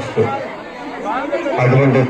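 Speech only: a man talking into a microphone with crowd chatter around him.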